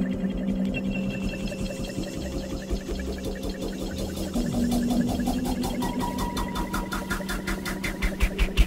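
Electronic dance music mixed from DJ decks: a steady low drone under a fast, machine-like ticking pulse, with a higher held tone coming in near the end as the track builds.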